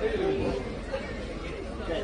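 A voice says a word near the start, over steady background chatter of people talking.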